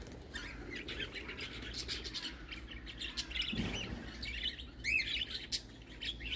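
Budgerigars chirping: a run of short, quick chirps and warbles throughout, with a brief low rustle about three and a half seconds in.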